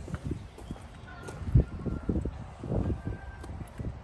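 Footsteps on asphalt and bumps from a handheld microphone, an uneven run of low thumps with one loud thump about one and a half seconds in.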